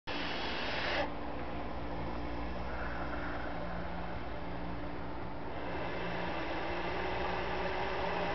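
Bull snake hissing in defence, agitated after feeding: a breathy hiss that stops abruptly about a second in, followed by softer breathy noise over a low steady hum.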